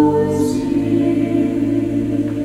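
Mixed chamber choir singing sustained chords; about half a second in, the voices move together to a new held chord with a brief sibilant consonant at the change.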